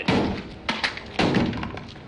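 Several sudden heavy thuds and knocks: one at the start, two close together under a second in, then a quick cluster a little later, as a rifle and a body hit against a car in a scuffle.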